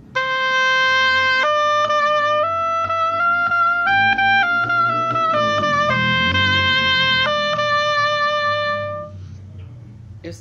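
Oboe, its double reed fitted to the instrument, playing a short line of held notes that climbs step by step and comes back down, stopping about nine seconds in.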